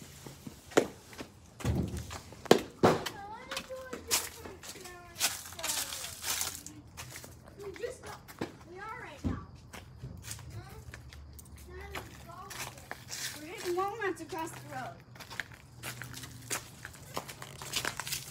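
Children talking at a distance, their words unclear, with scattered rustles and clicks as someone walks over leaves and grass.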